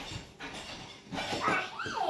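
A small child's high-pitched squeal that rises in pitch near the end, after a second or so of soft scuffling.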